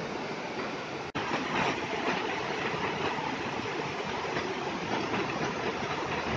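Waterfall rapids pouring over rock slabs: a steady rush of water, broken by a brief dropout about a second in.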